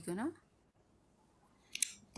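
A voice finishing a word, then a second or so of silence, then a short sharp click with a brief hiss near the end, just before talking starts again.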